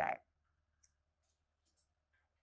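A woman's spoken word ends, then a quiet room with two faint, short clicks about a second apart.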